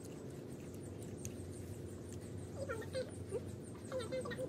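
A few short, high, wavering whines in the second half, over a steady background noise.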